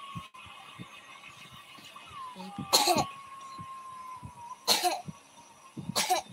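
A person coughing twice, two short, sharp coughs about two seconds apart. A faint, thin tone falls slowly in pitch between them.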